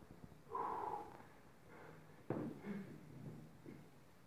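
A weightlifter's forceful exhale while holding a loaded barbell across his back. About two seconds in, a sharp thud as he drives the bar overhead and his feet land on the plywood lifting platform, followed by quieter breathing.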